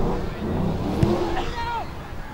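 Shouted calls from players and spectators at a football ground over a steady low wind rumble on the microphone, with one sharp thud about a second in: the football being kicked.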